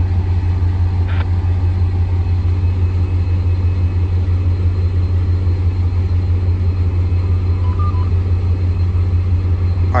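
Caltrain MP36 diesel locomotive (EMD 16-645 two-stroke prime mover) running with a steady, unchanging low rumble.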